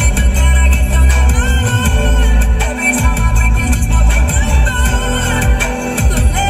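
Electronic music played loud through a car audio system driven by a JVC KW-V520BT head unit, heard inside the cabin, with heavy bass. The system has not yet been properly tuned.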